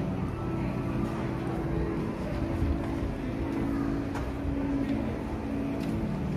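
A low, steady drone of a few held tones that shift pitch every second or two, under a faint wash of background noise in a large hall.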